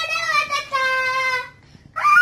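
A toddler singing in a high voice: two long held notes, the second one sliding slightly down, with a short break near the end.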